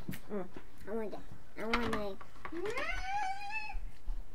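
A toddler vocalizing while eating cake: a few short sounds, then one long call that rises and holds high for about a second, stopping just before the end.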